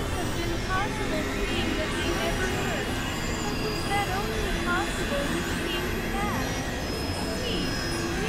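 Experimental electronic noise music: layered synthesizer drones with held high tones and many short swooping pitch glides over a dense low rumble, steady in level.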